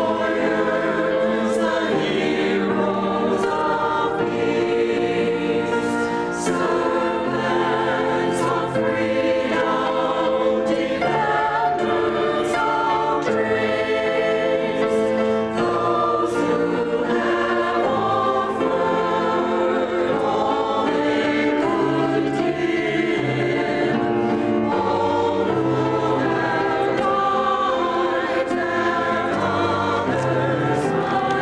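Mixed choir of men and women singing a hymn-style anthem, with grand piano accompaniment.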